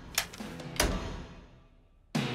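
Two heavy clunks about half a second apart, each ringing out and fading: cartoon sound effects of big studio light switches being thrown as the lights go off and on.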